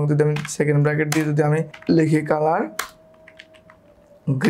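Typing on a computer keyboard: a quick run of sharp key clicks a little under three seconds in, lasting under a second.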